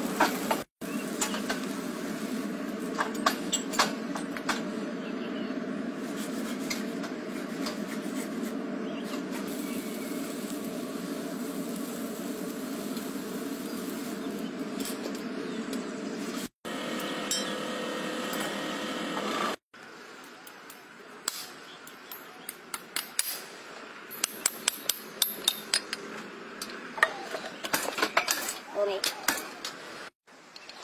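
A steady buzzing hum through the first half or more, cutting off abruptly a few times. Then, from about two-thirds of the way in, a farrier's hammer tapping horseshoe nails into a hoof: sharp metallic taps that come quicker toward the end.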